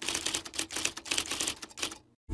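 A rapid, irregular run of sharp mechanical clicks, about ten a second, in the manner of typewriter keys: a typing sound effect laid over the edit. It stops just before the end.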